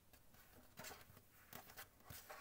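Near silence, with a few faint, soft rustles and taps as hands handle and smooth a crocheted cotton-blend yarn pouch on a tabletop.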